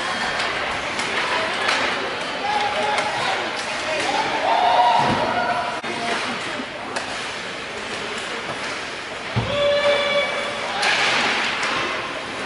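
Ice hockey game heard from rinkside in an echoing indoor arena: voices shouting over a steady din, with scattered clicks and knocks of sticks and puck, and a heavy thud about five seconds in and again near ten seconds.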